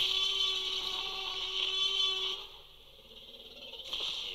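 Film soundtrack of a rainy night scene: a steady hiss of rain with a held low tone under it, falling away sharply about two and a half seconds in.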